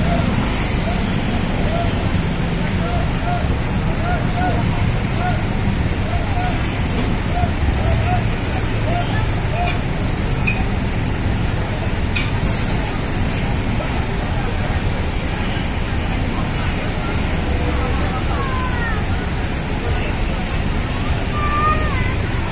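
Bus terminal ambience: a steady low rumble of idling bus engines and traffic under the chatter of people waiting nearby. A sharp click comes about midway, and a few short chirps near the end.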